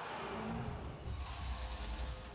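Television transition sound effect: a rushing whoosh with a deep rumble building underneath.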